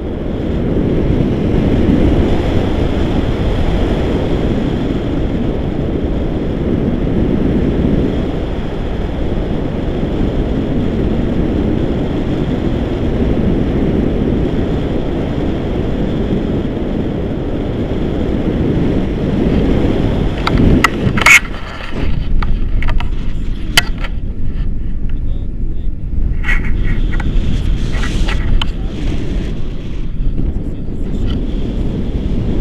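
Wind buffeting an action camera's microphone in flight, a loud, steady low rushing noise. About two-thirds of the way through it breaks off with a few sharp clicks and goes on thinner and gustier.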